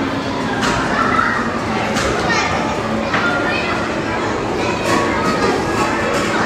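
Steady babble of many children's and adults' voices in a busy indoor gallery, with a few sharp knocks in the first half.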